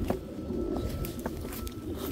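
Faint bird calls with a few light clicks.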